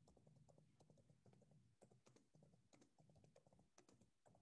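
Very faint typing on a computer keyboard: irregular key clicks, several a second, over a low hum.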